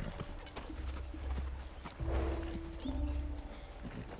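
Hooves of several horses clopping as they walk on a forest trail, with scattered irregular hoof strikes. A low rumble that swells and fades runs underneath, and a brief steady tone sounds about two seconds in.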